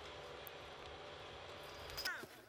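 Faint, steady low mechanical hum under an even hiss of background noise.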